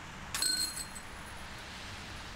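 A putted disc striking the hanging chains of a disc golf 'Pro Basket' about a third of a second in, with a sudden metallic jingle and a few bell-like ringing tones that die away in under a second. The putt is made and the disc drops into the basket.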